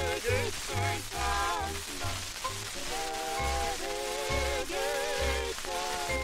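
Late-1940s orchestral recording of a Yiddish folk song: melody lines in close harmony with vibrato, long held chords about halfway through, over a bass beat about twice a second. An even hiss of old 78 record surface noise runs under it.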